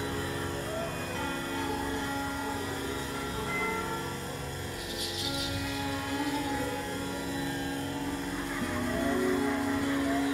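Free-improvised experimental music: layered sustained drone tones with slowly wavering pitched lines over a low rumbling bed, and a brief high, bright shimmer about halfway through.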